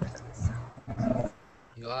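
Faint, hesitant speech: a few short murmured sounds from participants on a video call, then a brief lull.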